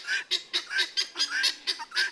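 A flock of chickens and helmeted guineafowl calling: a rapid run of short, harsh calls, about five a second.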